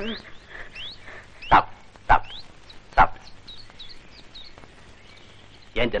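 A large dog barking: three short, sharp barks about half a second to a second apart, in the first half.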